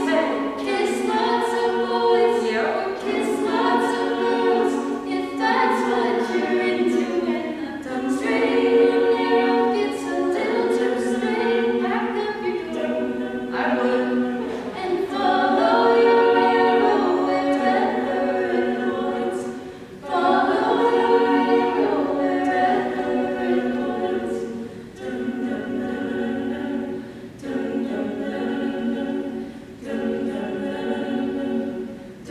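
College a cappella group singing unaccompanied in close harmony: several voices holding sustained chords, phrase after phrase, with short breaks between phrases and no bass voice underneath.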